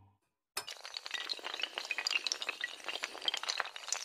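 Intro-animation sound effect of many small hard pieces clinking and clattering in a dense, irregular run, starting suddenly about half a second in after a moment of silence.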